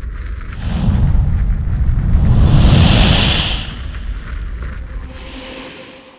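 Produced logo-intro sound effect of a flame burst: a low, noisy rush with a hiss on top that builds to its loudest about three seconds in and then fades. A steady ringing tone comes in near the end.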